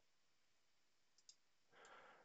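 Near silence, broken by two faint quick clicks close together about a second in, a computer mouse button pressed to open a new browser tab. A faint breath follows near the end.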